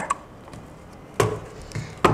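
A single sharp click a little past halfway through as a plug is pushed into a PoE switch, over quiet room tone.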